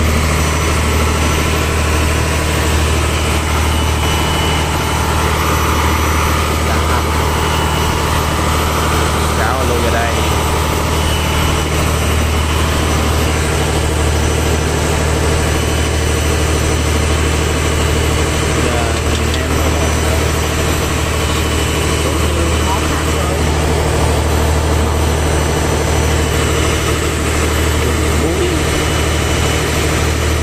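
Fishing boat's engine running with a steady, loud low drone.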